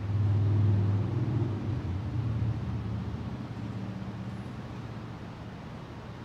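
Low engine rumble of a passing motor vehicle, loudest about half a second in and fading away over the next few seconds.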